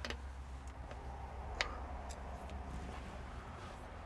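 Ratchet wrench clicking faintly a few separate times as it snugs the swing gearbox drain plug, the sharpest click about one and a half seconds in.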